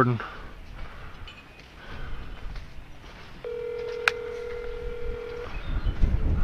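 Ringback tone of an outgoing call on a smartphone's speakerphone: one steady ring of about two seconds starting a little past halfway, with a short click during it, while the call waits to be answered.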